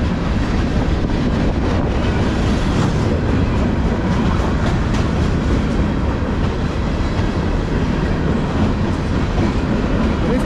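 Empty bulkhead flatcars of a long CSX freight train rolling past: a steady, loud rumble of steel wheels on rail, with scattered clacks.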